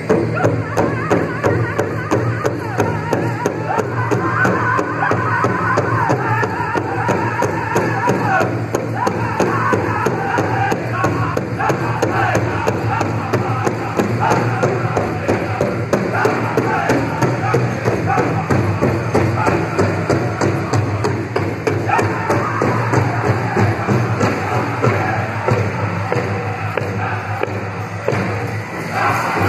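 A powwow drum group singing a men's fancy dance song: voices over a large bass drum struck by several drummers in a steady beat.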